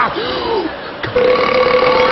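A man belching loudly: a short rise-and-fall sound first, then a long belch held on one steady pitch from about a second in.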